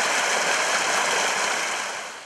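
Wastewater gushing out of a concrete outfall pipe into a stream as a steady rushing noise, fading out near the end.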